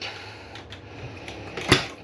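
A quiet steady room background with a few faint clicks, then a single louder knock near the end.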